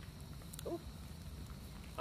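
Wood campfire burning in a steel fire ring, with a low steady rumble and a few faint crackles. A brief sliding tone sounds about two-thirds of a second in.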